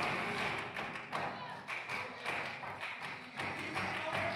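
Flamenco dance footwork (zapateado): shoes striking a wooden stage in a quick, irregular run of taps and thumps, with voices over it and music in the background.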